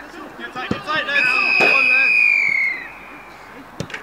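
Players shouting on a football training pitch, then a long whistle blast of about a second and a half whose pitch sags as it stops. A football is kicked just before the whistle and once more near the end.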